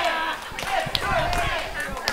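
Indistinct voices talking at a lower level, with a few faint, sharp knocks.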